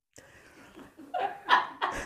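A woman laughing: faint breathy sounds at first, then from about a second in a run of short, quick bursts of laughter that grow louder.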